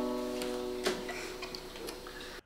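The last strummed chord of an acoustic guitar ringing out and fading. The chord cuts off with a soft knock just under a second in, followed by a few faint clicks.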